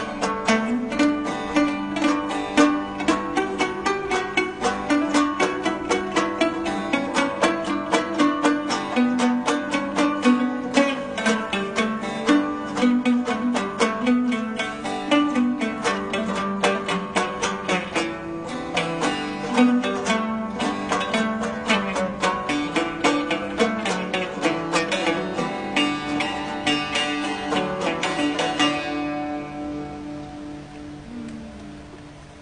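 Long-necked plucked lutes playing a fast folk melody in quick, evenly picked notes. The playing fades out near the end.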